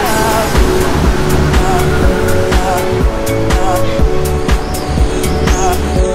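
Background pop song with a steady drum beat and deep bass.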